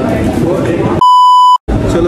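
A loud, steady beep at one pitch of about 1 kHz, lasting about half a second, starting about a second in. It is edited in over the audio, blanking out everything else while it sounds, and cuts off sharply: a censor-style bleep.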